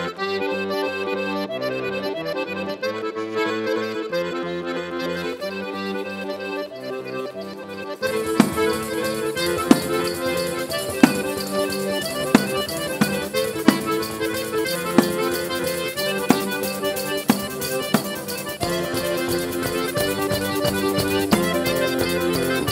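Organetto (diatonic button accordion) playing a lively Italian folk dance tune in sustained chords; about eight seconds in the band joins with a steady drum beat roughly every second and a bit, and a low bass comes in near the end.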